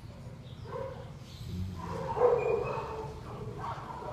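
Young puppies making a few short calls, the loudest and longest about two seconds in, with softer ones near the start and the end.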